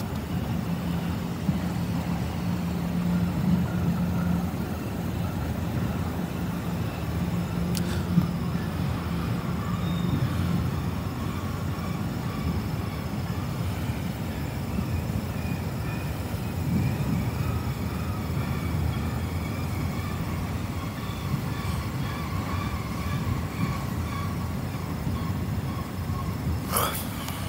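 Freight train of autorack cars rolling past, the steady running noise of steel wheels on rails, with a low hum through roughly the first ten seconds.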